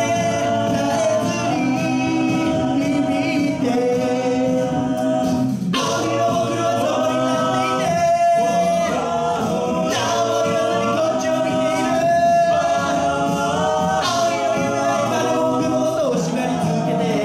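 Six-voice male a cappella group singing a pop song through handheld microphones, voices in close harmony with long held chords under the melody.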